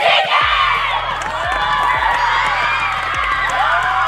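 A team of teenage girls shouting and cheering together, many high voices overlapping, over background music with a low, steady beat.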